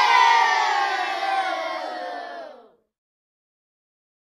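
A group of voices cheering together in one long drawn-out shout. It slides down in pitch and fades, then cuts off abruptly into silence a little under three seconds in.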